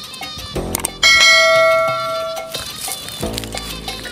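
A single bell-like ding about a second in, ringing with several steady tones for about a second and a half before fading.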